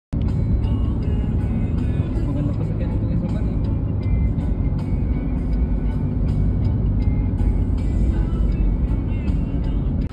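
Background music over a loud, steady low rumble like a moving vehicle. The sound drops off suddenly at the end.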